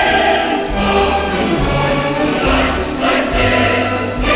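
Orchestral music with a choir singing held notes.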